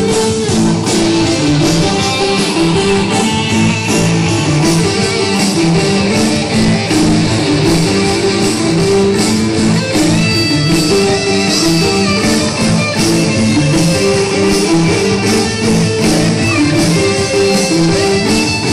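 Band playing dance music, led by electric guitar over a steady drum beat.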